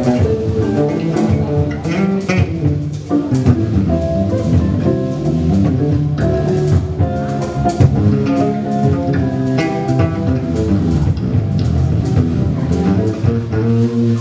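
Instrumental quartet playing live: electric guitar, accordion, electric bass and drum kit together, with a continuous run of notes over a steady drum beat.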